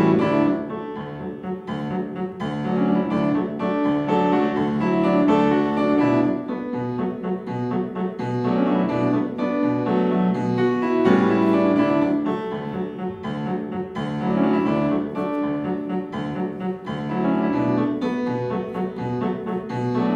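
Grand piano playing a classical-style tune with a regular beat, live accompaniment for a ballet barre exercise.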